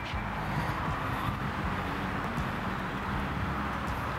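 Steady outdoor background noise, a low even rumble with no distinct event standing out.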